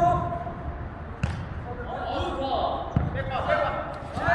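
Two sharp impacts of a jokgu ball being played, about a second in and again about three seconds in, with players' voices calling around them.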